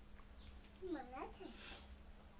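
A young goat bleating once, about a second in: a short call that dips and then rises in pitch.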